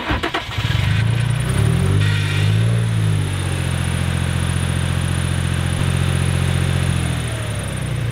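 Nissan 350Z's V6 engine cranking briefly, catching within the first second, flaring up and then settling into a steady idle. It is no longer stumbling now that a large unmetered air leak in the intake duct past the mass airflow sensor has been taped shut.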